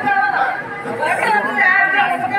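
Speech: several people talking at once.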